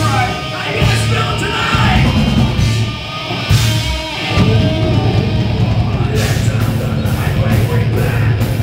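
Live heavy metal band playing loud: distorted electric guitars, bass and drums, with a vocalist shouting into the microphone. The band drops out briefly about four seconds in, then comes back in full with steady cymbal hits.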